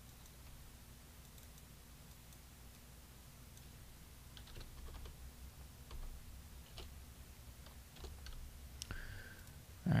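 Faint computer keyboard typing and mouse clicks, a few scattered keystrokes mostly in the second half, over a low steady hum.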